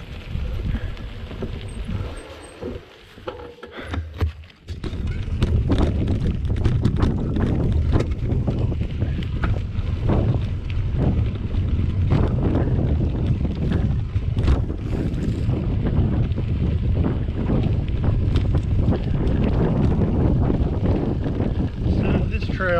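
Wind buffeting the microphone of a camera on a moving mountain bike, mixed with tyre rumble and frequent rattles and knocks from the bike over a bumpy dirt trail. It is quieter for a couple of seconds early on, then loud and steady from about five seconds in.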